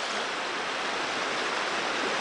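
Steady rush of river water running over rocks, an even hiss with no breaks.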